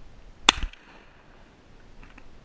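A single shotgun shot about half a second in: one sharp, loud report with a short tail.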